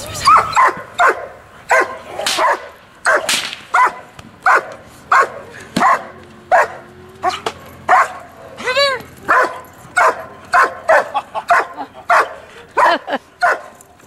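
A dog barking hard and repeatedly, about two barks a second without a break, with one higher, drawn-out yelp about nine seconds in.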